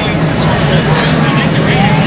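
NASCAR stock car engines running at the track behind the interview: a loud, steady drone that wavers a little in pitch.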